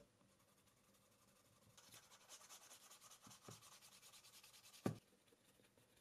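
Faint rubbing of a wooden burnisher along the edge of a chromexcel horse front leather pen case, polishing the sanded edge, starting about two seconds in. A single light knock comes near the end.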